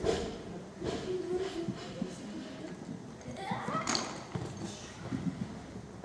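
Faint, echoing voices in a large sports hall, with a few light thuds as a weightlifter cleans a barbell from the wooden platform to his shoulders.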